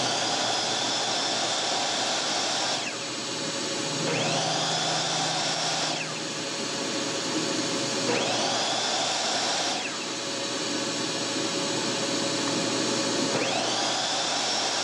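A small shop vac running steadily while a small electric saw runs in short spells. The saw is already running at the start, then is switched on three more times, its motor whining up in pitch each time, running two to three seconds and cutting off.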